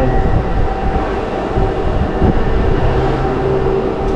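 Suspended spinning glider ride running along its overhead track: a steady mechanical rumble of wheels on rail with a constant hum underneath.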